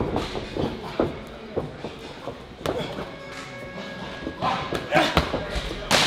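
Gloved punches landing on focus mitts during pad work: a run of sharp smacks at uneven spacing, with a quick flurry near the end, over background music.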